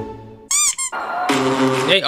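A plucked-string music note fading out, then a short, high, wavering squeak sound effect about half a second in, followed by a hissy, voice-like sound near the end, from the edited compilation.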